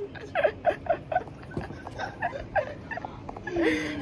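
A woman and a man laughing, in short repeated bursts.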